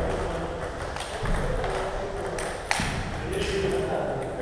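Table tennis ball clicking off bats and the table during a rally, with one sharp click near three seconds in.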